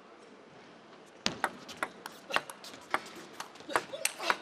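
A table tennis rally: after a quiet second while the serve is prepared, a quick run of sharp clicks as the ball is struck by the bats and bounces on the table, back and forth.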